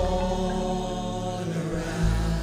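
Live gospel worship music from a singing team and band: voices hold a sustained chord over keyboard and bass, and the bass moves to a new note at the end.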